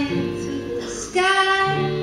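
A woman singing live over her own acoustic guitar; a long held sung note comes in about a second in.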